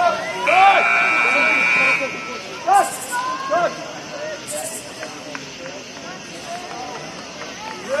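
Soccer players shouting to each other across the field. A steady whistle blast comes about half a second in and lasts about a second and a half.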